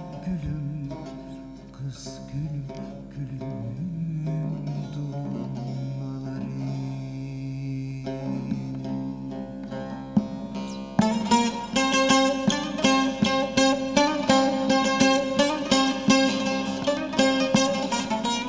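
Bağlama (Turkish long-necked lute) playing a folk-song interlude. Softer held low notes give way, about eleven seconds in, to a louder, bright passage of quick repeated strokes.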